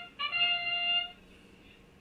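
Competition field's match-start sound effect: one held, steady musical note with bright overtones lasting about a second, signalling the start of the autonomous period. It cuts off abruptly, leaving the hall fairly quiet.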